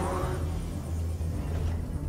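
Ominous sci-fi film score: a steady, deep low drone with a rumbling undertone.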